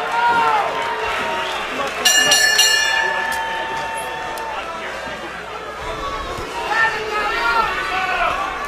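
A boxing ring bell is struck about two seconds in, signalling the start of the final round; its high tone rings for about a second and fades. Arena crowd noise and voices run underneath.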